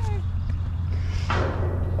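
A thrown golf disc striking a wooden telephone pole down the fairway: one short, dull knock about a second and a half in, over a steady low rumble.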